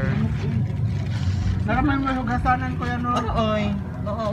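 People's voices talking at the table, with a stretch of speech from a little before the middle to near the end, over a steady low background rumble.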